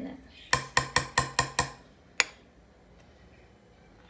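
Metal spoon rapped six times in quick succession against the rim of a glass jar, knocking thick cream off the spoon, each tap ringing briefly. One more sharp click follows about two seconds in.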